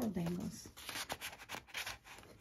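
Paper rustling and rubbing as a paper tag and the heavy handmade pages of a journal are handled and turned, in a run of short scratchy rustles. A brief hummed voice sounds in the first half-second.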